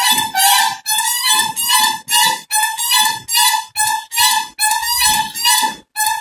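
A crane calling a steady run of short, reedy notes, all at the same pitch, about two and a half a second.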